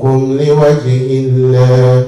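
A man chanting in a drawn-out, melodic voice, holding long steady notes with a brief break about a second in, then trailing off at the end.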